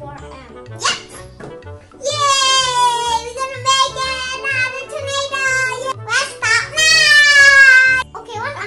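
Children cheering "yay" in long, high-pitched shouts over background children's music, loudest near the end.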